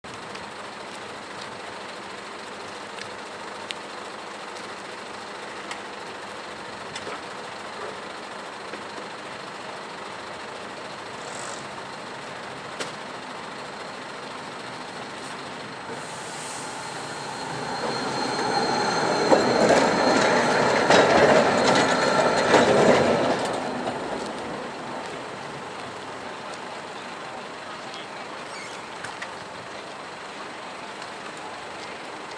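Low-floor articulated tram running past close by on curving track. Its rolling noise swells and fades, loudest a little past the middle, with a thin high wheel squeal while it is nearest.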